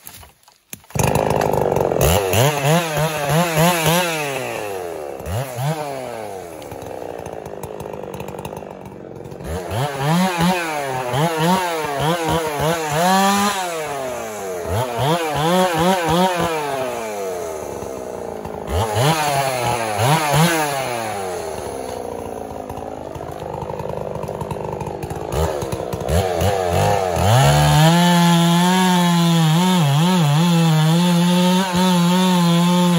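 Chainsaw engine starting up about a second in and revving up and down over and over, easing off for a few seconds, then held steadily at high revs near the end.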